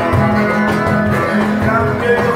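Two acoustic guitars playing over a steady beat from a cajón.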